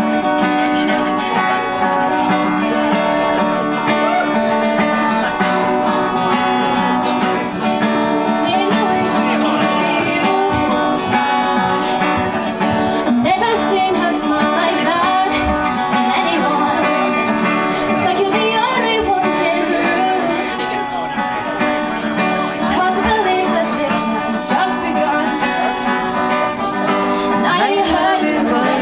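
Acoustic guitar strumming chords live, with a woman singing over it.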